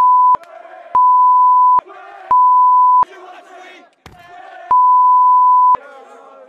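Censor bleep, a single steady beep tone, cutting in four times for about half a second to a second each and blanking out shouted words. A crowd is shouting between the bleeps.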